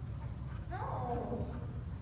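A dog giving high, wavering yelps for about a second, over a steady low hum.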